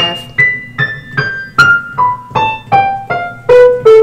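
Piano notes played one at a time, about three a second, stepping steadily downward in pitch. These are the white keys B, A, G and F in descending order, repeated group after group down the keyboard.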